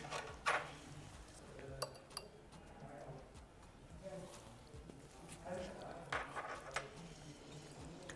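Faint handling sounds of a white ceramic salad bowl being picked at with gloved fingers: a few soft clicks and clinks in the first two seconds, then quieter scattered sounds from about five and a half seconds in.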